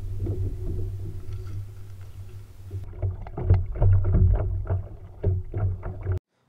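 Kayak out on open water: water splashing and knocking against the hull over a steady low rumble, the knocks coming thicker from about three seconds in.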